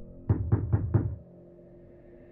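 Four quick, hard knocks about a quarter second apart over a low musical drone, then only a faint low hum.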